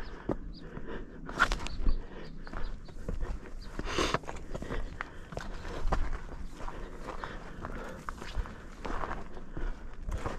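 Irregular footsteps on rocky ground, with brush scraping and rustling against clothing and gear. A few louder scuffs stand out among the steps.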